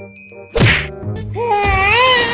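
One sharp whack about half a second in, then a voice wailing in long wavering notes over soft background music.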